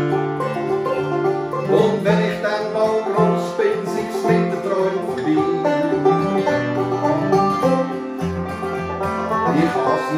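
Banjo and acoustic guitar playing a tune together, picked live.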